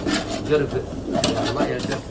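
A bird cooing, with people talking in the background.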